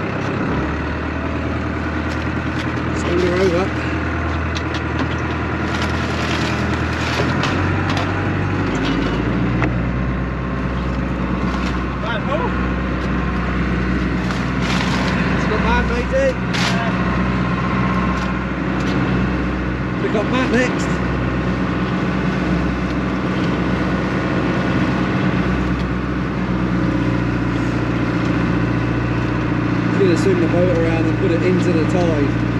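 A boat's engine running steadily, its note shifting lower about nine seconds in, with scattered clicks and knocks of scallop shells being handled.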